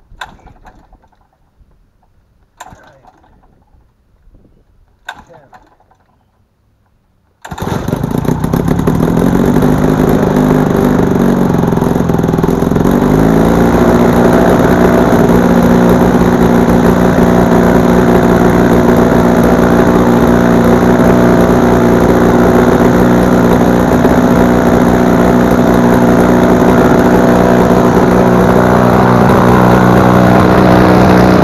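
72 hp McCulloch four-cylinder two-stroke drone engine on a gyrocopter, hand-propped: three short knocks about two and a half seconds apart as the propeller is swung, then about seven seconds in it catches and runs. A few seconds later its speed rises, and it then runs steadily.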